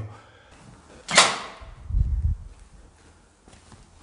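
A brief sharp swish about a second in, then a low thud a second later, from the handheld camera being carried and brushed while walking.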